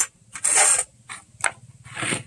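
Kitchen handling sounds: a metal spoon scraping in a glass bowl of palm sugar, and a wooden cutting board being moved on the table. They come as a handful of short scrapes and knocks, the longest lasting about a third of a second just after the start.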